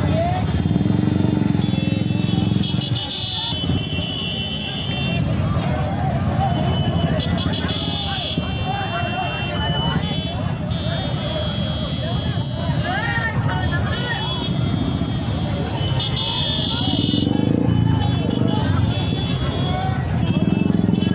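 A crowd of people talking and shouting over idling motorcycle engines, with high horn-like tones sounding in short spells.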